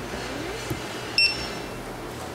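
A single short, high beep from a store checkout's point-of-sale equipment about a second in, over steady store background noise.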